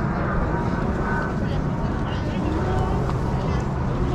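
Voices of several people talking in the background over a steady low hum.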